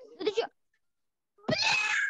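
A brief, loud, cat-like cry about one and a half seconds in, coming through the video call's audio from an uninvited participant's shared clip.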